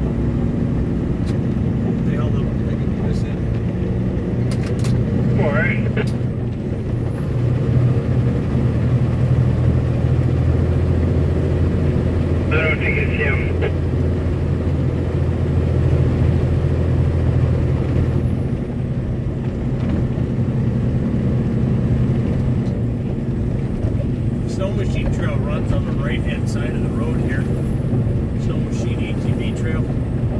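Truck engine and tyre noise heard from inside the cab while driving on a rough paved road. The low drone grows heavier for about ten seconds in the middle, with a faint high whistle over the same stretch.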